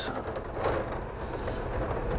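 Quiet handling of a length of metal wire: soft scraping and faint light clicks as it is straightened with pliers, over a low steady hum.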